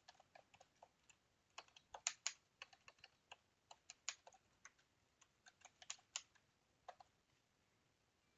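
Faint typing on a computer keyboard: an irregular run of quick keystrokes that stops about a second before the end.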